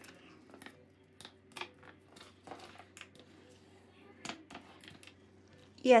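Thin clear plastic from a soda bottle crinkling and clicking as it is pressed and creased into a fold, in faint, irregular ticks.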